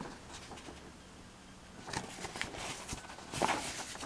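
Paper pages of a model-kit instruction booklet being turned by hand, with soft rustles about two seconds in and a louder rustle near the end.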